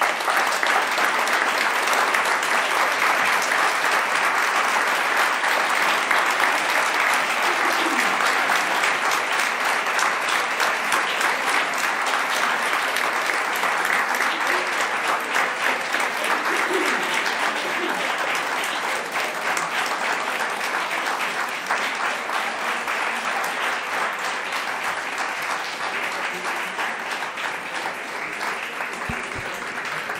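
Audience applauding, a long, sustained round of clapping that eases off slightly toward the end.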